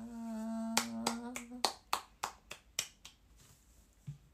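A young woman's voice holds a long, level "ta" for about a second and a half. Over its end comes a quick run of about ten sharp clicks made with the hands, three or four a second, fading out.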